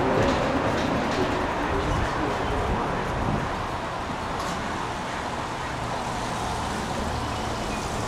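Steady road-traffic noise, a continuous low rumble and hiss, with a low hum that comes up in the second half.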